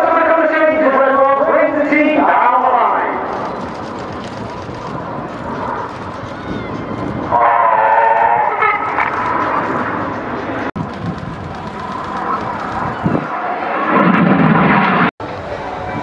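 Steady jet roar from a formation of BAE Hawk jets of the Red Arrows flying a smoke display, with spells of voices over it at the start, in the middle and near the end. The sound drops out briefly twice in the second half.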